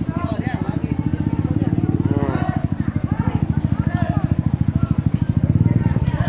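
Motorcycle engine idling close by with a rapid, even putter of about ten beats a second, growing a little louder near the end.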